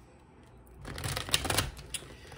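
Tarot cards being shuffled by hand: a papery rustle with several quick clicks that starts about a second in and lasts about a second.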